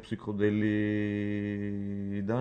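A man's voice holding one steady low vowel for nearly two seconds, a drawn-out filler sound between stretches of talk, starting just after a short spoken syllable.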